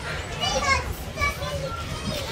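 Children's voices: short calls and chatter, with no clear words.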